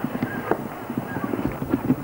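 A quick, irregular run of short knocks and clacks, several a second, with faint voices behind.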